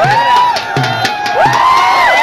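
Dhol drum beating under a cheering crowd, with repeated high whoops that rise, hold and fall.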